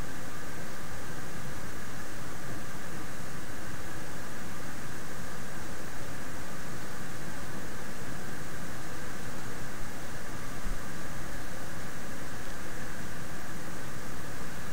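Steady hiss of background noise on the recording, even in level, with no distinct clicks or other events.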